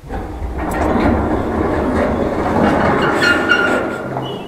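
An old passenger lift cab rattling and rumbling loudly, the noise starting suddenly. A squeal comes in near the end.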